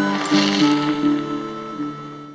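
Title card music: a tune of held notes with chord changes, fading out near the end.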